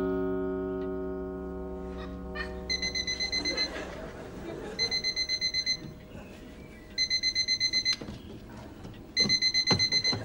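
Small battery alarm clock beeping: four bursts of rapid high electronic beeps, each about a second long and roughly two seconds apart, louder with each burst. A couple of sharp knocks sound near the end as the clock is grabbed.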